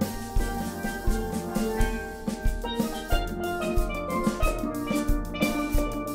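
A steel band playing a lively tune: steel pans ring out the melody and chords over a bass pan line, with a drum kit keeping the beat.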